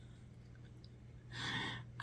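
A woman's breathy exhale, like a sigh, about one and a half seconds in, over a low steady hum.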